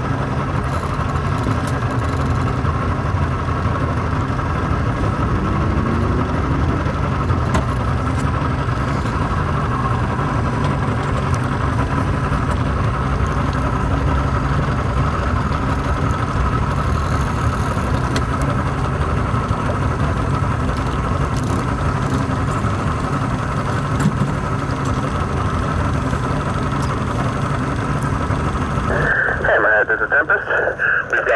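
Boat engine idling steadily, an even low drone that holds without change.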